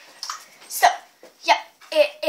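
Short, unclear bursts of a girl's voice, with a single knock about a second in.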